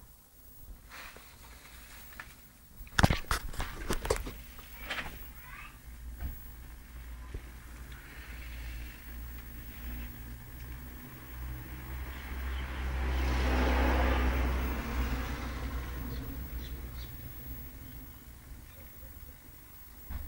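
A vehicle going past: a low rumble that swells and fades over about six seconds in the middle, after a few sharp knocks a few seconds in.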